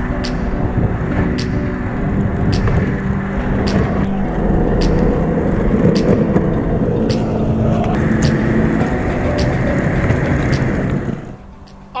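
Longboard wheels rolling fast over asphalt: a loud, steady road rumble with a faint tick about once a second. It cuts off about a second before the end.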